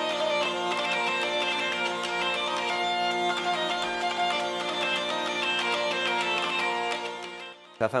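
Hurdy-gurdy (zanfona) playing a melody on its keyed strings over steady sustained drones, then fading out near the end.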